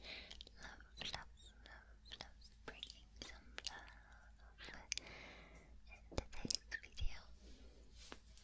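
Close-up whispering into the microphone, with breathy hissing and many sharp clicks between the phrases.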